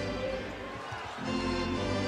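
In-arena music of sustained chords, changing about a second in, over the court sound of a basketball being dribbled up the floor.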